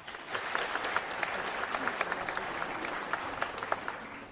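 Theatre audience applauding, breaking out all at once and thinning near the end.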